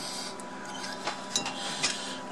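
A steady electrical hum with a faint high tone, and a few light clicks about a second in and near the end.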